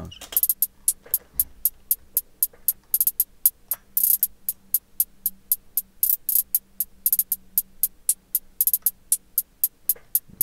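Programmed trap-style hi-hat pattern played on its own: a steady run of crisp ticks about four a second, broken several times by quick rolls of faster hits.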